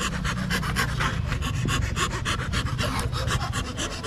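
Hand fretsaw cutting lettering out of a thin plate of gáo vàng (yellow) wood: a fast, even run of short rasping strokes, several a second.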